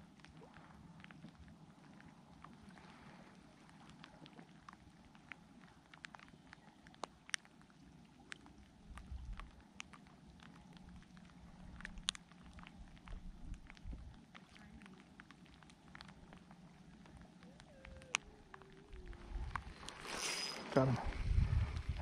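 Quiet lakeshore outdoor ambience with faint scattered clicks and a few low rumbles of wind on the microphone, then a louder burst of rod and reel handling noise near the end.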